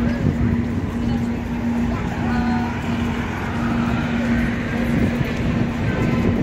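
City street ambience: traffic rumble and faint distant voices, with a steady low hum throughout.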